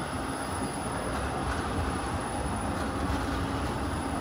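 Škoda 15T ForCity low-floor tram passing close by: a steady rumble of its wheels rolling on the rails, with a faint steady hum.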